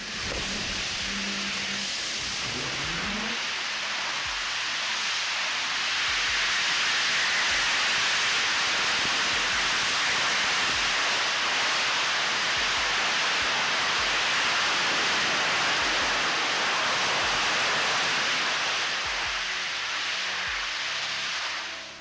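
Stoke Space Hopper 2 test vehicle's rocket engine firing through a hop: a steady rushing roar of exhaust that grows louder about five seconds in as the vehicle lifts off and hovers, then dies away near the end as it sets down.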